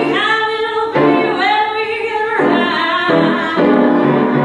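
A woman singing a musical-theatre ballad with piano accompaniment, her held notes wavering with vibrato.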